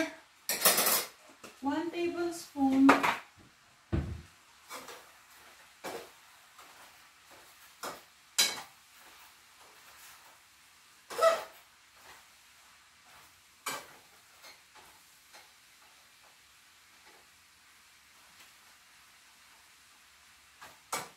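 A cooking utensil knocking and scraping against a frying pan as a beef stir fry is stirred, in scattered clinks a second or two apart. A faint sizzle runs underneath.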